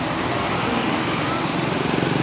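Steady road traffic noise.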